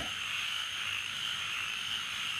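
Steady, high-pitched night chorus of calling frogs, unbroken and without rhythm.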